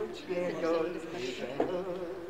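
A man's voice on a cassette field recording, pitched and wavering in short phrases.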